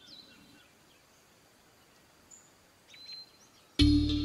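Faint outdoor background with a few scattered, high bird chirps. Background music starts abruptly just before the end.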